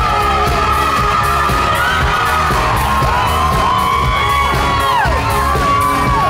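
Live pop-rock band playing loudly, with keyboard, electric guitar and drums, and a voice holding long notes that slide up and down in pitch.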